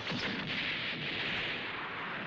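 Cartoon impact-and-explosion sound effect as a giant robot's fist smashes into a monster: a sudden blast just after the start, followed by a steady rushing explosion noise.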